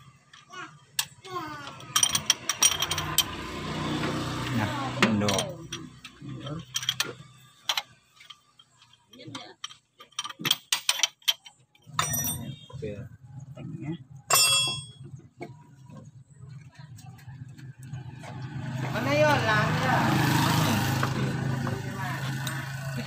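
Wrench and metal tools clicking and clinking on a Toyota Kijang 5K engine as its cylinder head bolts are undone, with a sharper metallic ring about halfway through. A steady low motor hum comes in from about halfway.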